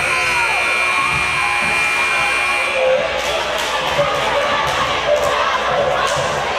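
Gymnasium scoreboard buzzer sounding one steady high tone for about three seconds over crowd chatter in the hall, marking the end of halftime. A few sharp knocks follow in the second half.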